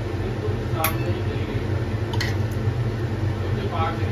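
Metal ladle clinking twice against a steel bowl and a pressure cooker while curry is served, once about a second in and again about two seconds in. A steady low hum from the kitchen chimney's exhaust fan runs underneath.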